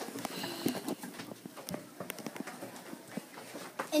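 Scattered light clicks and knocks from hands handling a plastic bottle and the tabletop, with faint voices murmuring.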